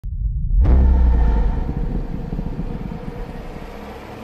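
A loud, deep vehicle rumble that sets in suddenly about half a second in and slowly fades.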